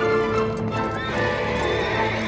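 Horses galloping on a dirt road, their hoofbeats clopping, with a horse whinnying, over sustained orchestral film-score music.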